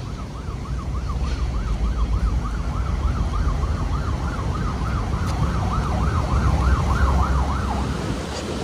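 An emergency vehicle siren on its yelp setting, a tone sweeping rapidly up and down about three times a second, stopping near the end. Wind buffets the microphone underneath.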